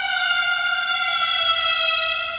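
A single long, siren-like tone that sinks slowly in pitch.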